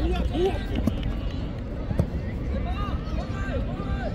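Players and spectators shouting and calling across a youth football pitch, with a single sharp thud of a football being kicked about two seconds in, over a steady low rumble.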